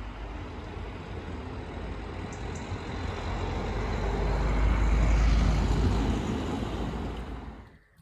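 A road vehicle passing by: a rumbling noise that swells to its loudest about five seconds in and then fades, cut off abruptly just before the end.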